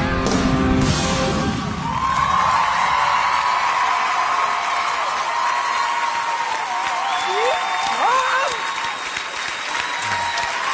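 A live rock band ends its song with a couple of big final hits in the first two seconds, then a studio audience cheers and applauds loudly. A long held high note rings over the cheering, with whoops from the crowd near the end.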